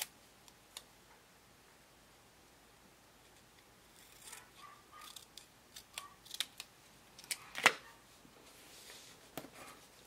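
Small scissors snipping a strip of planner paper, a few short cuts and clicks with light paper handling, mostly in the second half.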